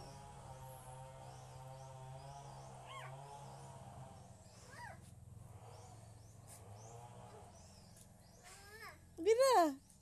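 Faint background hum with a couple of brief high squeaks, then near the end a young child's voice, loud and high-pitched, rising and falling in a short squeal.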